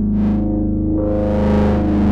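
Korg Monologue monophonic analogue synthesizer holding a low note rich in overtones. Its tone brightens and darkens twice as the filter sweeps open and closed.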